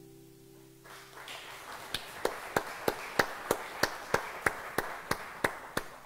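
The song's last chord rings out and fades, then a congregation applauds, with one set of hands clapping steadily at about three claps a second.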